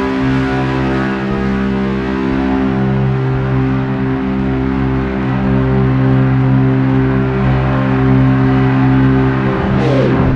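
Ambient post-rock instrumental: layered, sustained electric-guitar drones, a Fender Telecaster through a tube amp and looper, holding several steady low notes. Just before the end, a sliding sweep in pitch cuts across the drone.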